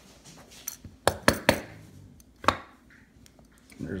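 About five sharp metallic clicks and taps as an outboard carburetor body is handled and a small steel check ball comes out of it. Most of the clicks fall together about a second in, with a last one about two and a half seconds in.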